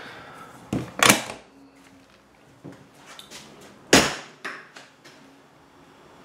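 Metal storage compartment door being shut and handled: a sharp double knock about a second in and a louder single bang about four seconds in, with small clicks between.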